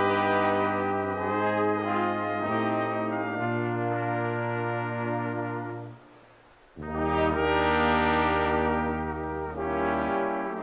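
Brass band of trumpets, flugelhorns, trombones and tuba playing a polka in sustained full chords over the tuba's low notes. About six seconds in the whole band stops for under a second, then comes back in loudly together.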